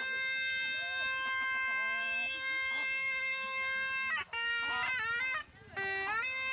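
A suona-type shawm (a double-reed horn with a brass bell) playing one long held note for about four seconds, then a run of short ornamented notes with a brief break near the end.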